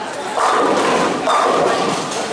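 Bowling ball crashing into the pins about half a second in, followed by over a second of loud clattering as the pins scatter and fall.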